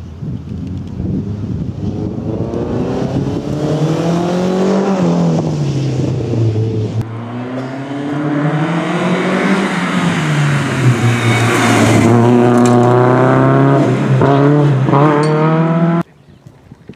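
Renault Clio Sport rally car's engine revving hard under acceleration. Its pitch climbs, drops at a gear change or lift about five seconds in, climbs and drops again, then holds high. The sound grows louder as the car approaches, loudest in the last few seconds.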